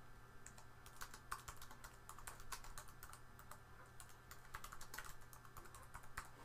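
Typing on a computer keyboard: a faint, irregular run of key clicks as a sentence is typed.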